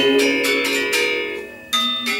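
Balinese gender wayang bronze metallophones playing a quick run of struck, ringing notes. The sound fades briefly about three-quarters of the way in, then a new loud stroke comes in.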